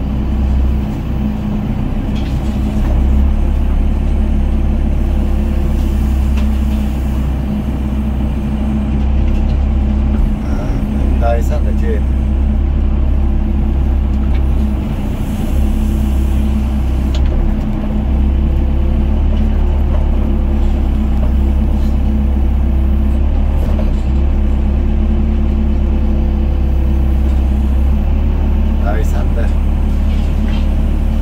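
Doosan DX55 mini excavator's diesel engine running steadily under load, heard from inside the cab, with the hydraulics working as the bucket digs rubble and swings over to a dump truck. The deep engine hum drops back briefly a couple of times as the load changes.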